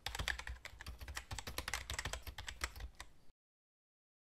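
Computer keyboard typing, a rapid run of key clicks that stops a little over three seconds in.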